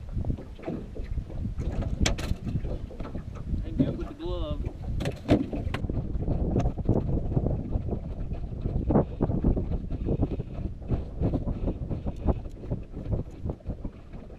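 Wind buffeting the microphone on a small open boat, a steady low rumble, with scattered knocks and clatter from the boat and gear.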